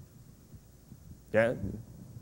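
Quiet room tone with a faint low hum, then a man's voice briefly saying "Yeah?" about a second and a half in.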